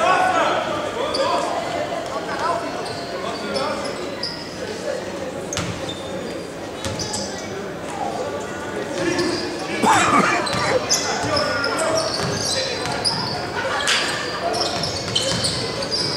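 Basketball in play on a hardwood court in a large, echoing sports hall: the ball bouncing and hitting the floor, under indistinct players' and spectators' voices, with a louder call about ten seconds in.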